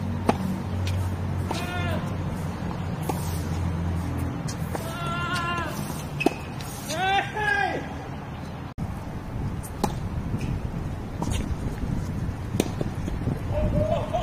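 Tennis rally: sharp pops of the ball striking the racket strings and bouncing on the hard court, spaced a second or more apart, the loudest just after the start. A few short voiced calls come in between.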